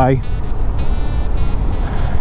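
Steady low wind rumble on the microphone and road noise from a Monaco GT electric scooter riding along at speed.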